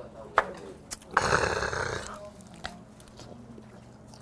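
A man's loud, breathy exhale with a throaty rasp, lasting under a second, about a second in, just after knocking back a shot of liquor. It comes after a couple of light clicks.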